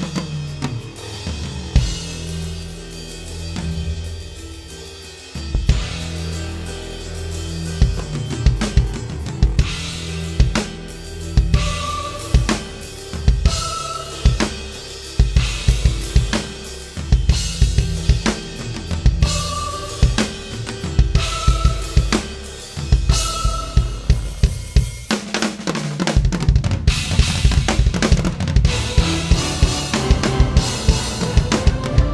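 Acoustic drum kit playing a solo, with bass drum, snare and cymbals over a sustained low bass line. It starts sparse, settles into busy grooves from about five seconds in, and breaks into a rapid flurry of strokes near the end.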